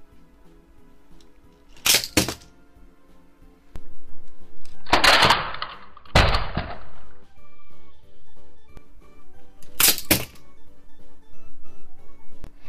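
Plastic burst-transforming toy car springing open over background music. There are two quick sharp clacks about two seconds in and again around ten seconds, and a louder crash-like noisy burst between about five and seven seconds.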